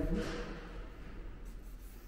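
A pause between speech: a short breath near the start, then faint scratchy rustling over quiet room tone.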